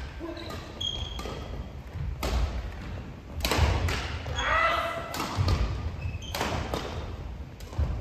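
Badminton being played in a gym hall: sharp racket-on-shuttlecock hits and footfalls thudding on the wooden floor, with a few short shoe squeaks and voices calling out.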